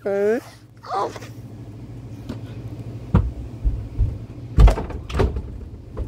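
A drawn-out hesitant "uh" at the start and a brief vocal sound just after, over a steady low hum. Then several short knocks and thumps of a phone being handled while a finger works its touchscreen, the loudest a little past the middle.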